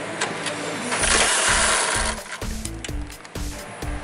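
Pneumatic impact wrench hammering on an exhaust hanger nut to undo it: one loud burst of about a second, then several shorter bursts.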